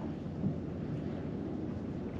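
Low, steady rumble of wind on the microphone, with no distinct sounds standing out.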